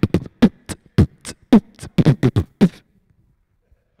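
A man beatboxing into a handheld microphone: a quick run of sharp mouth-percussion beats, about six a second, that stops about three seconds in.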